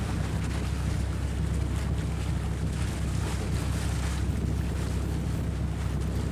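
Steady wind rumble on the microphone over the wash of sea and surf, with a wooden fishing boat running under power through the waves.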